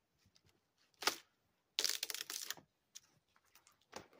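Dry dead cedar branches being snapped off a tree by hand: one sharp crack about a second in, then a longer run of cracking and crackling a little under a second later.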